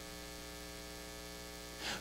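Faint, steady electrical mains hum from the microphone and sound system.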